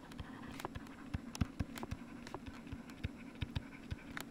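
Faint, irregular ticks and taps of a stylus tip on a pen tablet during handwriting, over a faint steady low hum.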